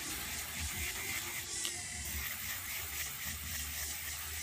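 Electric nail file (e-file) running with a sanding bit lightly buffing a fingernail smooth and even: a steady high hiss over a low motor hum.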